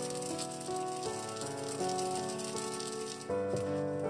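Sesame seeds being ground with a wooden pestle in a ridged Japanese suribachi grinding bowl: a rapid, dry rattling that stops a little over three seconds in, over background music.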